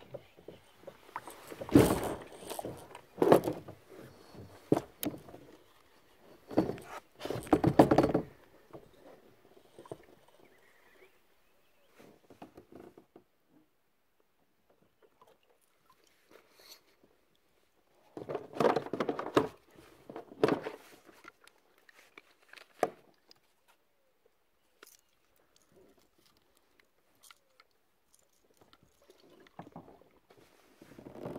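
Intermittent bursts of handling noise, knocks and rustling on a fishing kayak, each lasting a second or two, with quiet stretches between them.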